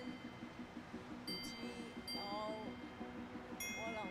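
Bright chime sound effect ringing twice, about a second in and again near the end, each a cluster of high steady notes that fade out, over faint background music.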